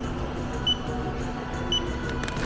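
Handheld barcode scanner beeping twice, two short high beeps about a second apart as grocery items are scanned, over a steady low store background.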